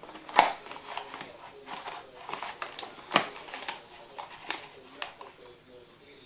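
A spoon scooping cocoa powder from a cardboard box and tipping it into mugs: soft scrapes and light clicks, with two sharper knocks about half a second in and about three seconds in.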